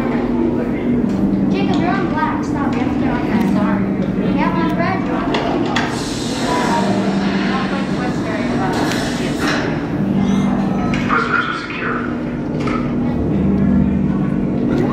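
Indistinct chatter from a crowd of people over a steady low drone that steps back and forth between two pitches every second or two.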